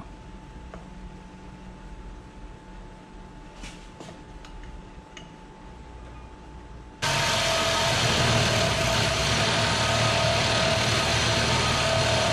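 A reciprocating saw (Sawzall) cutting through the aluminium center differential housing of a Subaru 5-speed transmission. It starts suddenly about seven seconds in and runs loud and steady. Before it there is only faint shop noise with a steady hum and a few light ticks.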